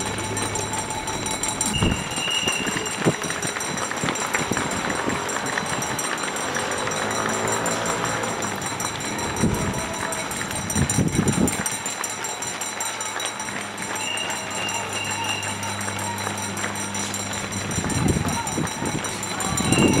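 Marathon street ambience: the footsteps of a passing crowd of runners on asphalt, with indistinct voices of spectators along the road.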